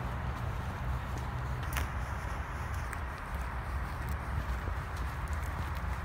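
Footsteps of someone walking on a path, faint ticks about once a second, over a steady low rumble of wind on the phone's microphone.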